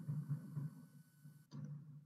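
Faint room tone through a webinar microphone: low hum and hiss, with a faint steady high tone. The hiss cuts off suddenly about one and a half seconds in.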